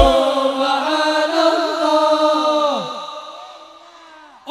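The end of a sholawat song: the voices hold a final sung note after one last drum beat, then slide down in pitch and fade out about three seconds in.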